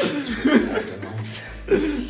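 A man chuckling in short bursts, then starting to speak near the end.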